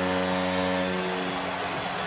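Arena music after a goal: a sustained chord of steady tones fades out over about a second and a half, over steady crowd noise.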